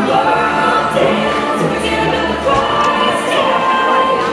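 A group of voices singing together in a stage musical number.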